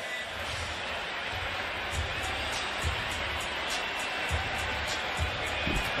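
Basketball game arena sound with no commentary: a steady wash of crowd noise and arena audio, with several dull thuds of the ball bouncing on the hardwood court.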